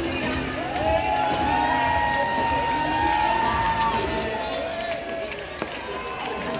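Baseball stadium crowd chatter and cheering, with music playing over the ballpark's speakers: several long held, gently bending notes over the crowd noise.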